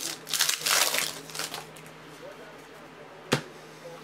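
Foil trading-card pack being slit and torn open, a loud crinkling rustle in the first second and a half, followed by quieter card handling and one sharp click near the end.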